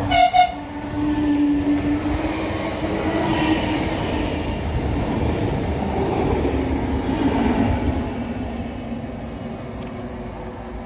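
Electric multiple units EN99-001 and EN64-002 passing along the platform. It opens with a short horn blast lasting about half a second, followed by the rumble of the wheels on the rails and a motor whine that rises and then falls in pitch as the train goes by and away.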